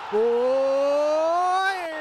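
A man's voice calling out one long, drawn-out "ohhh", its pitch slowly rising and then starting to dip near the end.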